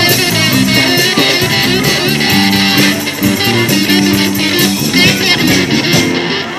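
Live rock band playing an instrumental stretch: electric guitars over bass and a steady drum beat.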